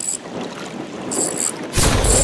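Wind buffeting the microphone over lapping water, with a short high-pitched buzz from the fishing reel as a hooked fish pulls against the bent rod. Near the end a loud, sudden explosion sound effect with a deep rumble.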